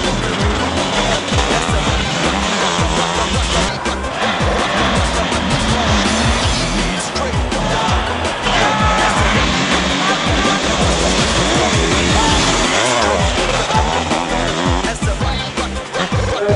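Music mixed with the engines of sidecar motocross outfits racing, running loud and steady throughout.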